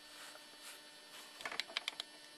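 Faint steady electrical hum, with a quick run of about six light clicks about one and a half seconds in.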